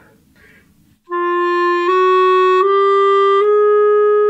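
Clarinet playing the throat-tone notes G, A-flat, A and B-flat as a rising run of four half steps, starting about a second in, the last note held longest. These are played with added resonance fingerings, which give the notes a deeper, more solid sound.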